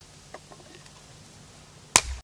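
An axe striking a log on a wooden chopping block: one sharp, loud chop near the end, over a faint outdoor background.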